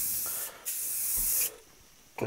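Aerosol can of clear enamel spraying a clear coat onto rusted steel panels: a short hiss, then a longer one about a second long.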